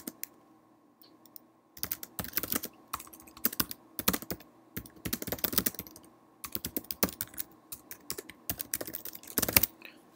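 Typing on a computer keyboard: quick runs of keystrokes starting a little under two seconds in, with a short pause near the middle, stopping just before the end.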